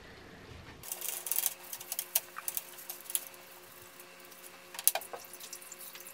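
A cloth rag being dipped and wrung out in a glass bowl of water: irregular splashes and drips, with one louder splash about five seconds in.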